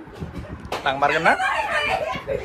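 A rooster crowing: one loud, long call starting suddenly about two-thirds of a second in.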